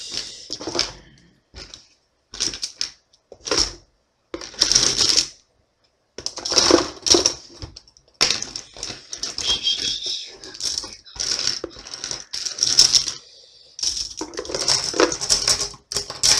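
Plastic Bic Cristal Up ballpoint pens clattering against each other and the cardboard box as they are scooped up by the handful, in a series of short rattles with brief pauses.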